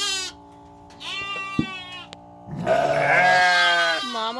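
Lambs bleating loudly in three calls: a short one at the start, another about a second in, and a long, drawn-out one near the end.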